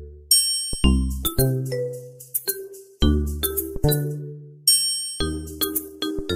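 Background music: a light instrumental tune of bell-like chiming notes over deep bass notes, each note struck and fading away.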